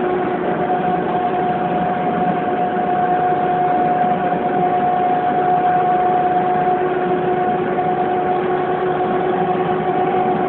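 A vehicle engine running with a steady drone and an even hum, unchanging throughout.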